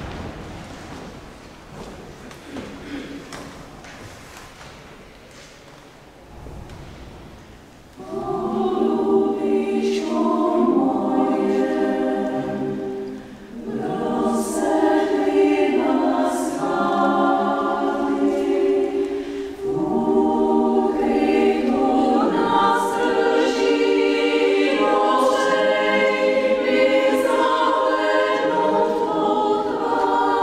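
Women's chamber choir singing a cappella in several parts, coming in about eight seconds in after a few quieter seconds, with held chords and two short breaks for breath.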